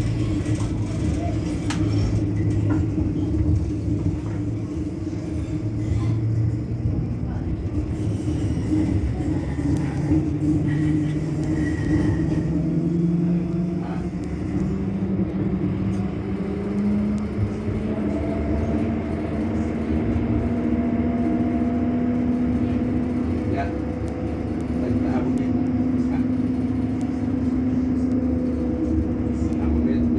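Bombardier Flexity Outlook tram standing at the platform with its onboard equipment running: a steady low hum of several tones, one of which rises slowly in pitch starting about ten seconds in.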